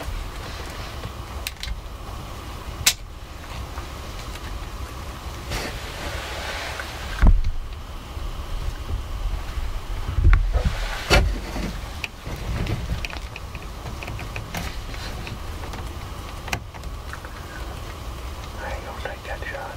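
Steady low wind rumble on the microphone, broken by a few sharp clicks and knocks from movement nearby. The loudest knock comes about seven seconds in, and a pair of thumps follows a few seconds later.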